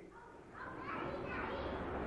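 Faint, indistinct background voices, a murmur of distant chatter that rises about half a second in while the main speaker is silent.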